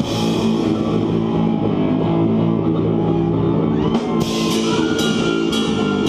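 Live rock band playing loud distorted electric guitar and bass chords over drums. About four seconds in, a held high guitar note enters and cymbal strikes start landing roughly twice a second.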